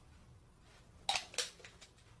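Energy drink can scraping and pressing against a flat-screen TV screen: two short, sharp scrapes close together about a second in, then a few fainter ones.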